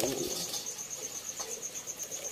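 An insect, like a cricket, chirping steadily in the background: a faint, high, even pulsing at about ten pulses a second. A soft click comes about one and a half seconds in.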